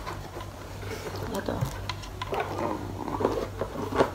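Rustling and light clicks of plastic nebulizer parts and packaging being handled as they are taken out of a cardboard box, with a word or two spoken softly and a steady low hum underneath.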